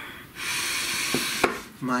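A long breath, heard as a steady hiss about a second long, followed by two light clicks from a tarot deck being handled.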